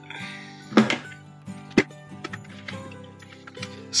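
Plastic fermenting-bucket lid being pried off, giving two sharp snaps about one and two seconds in, over quiet background music.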